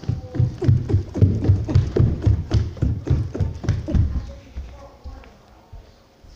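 Quick footsteps running down a flight of stairs, about three heavy thumps a second, easing off and fading about four and a half seconds in.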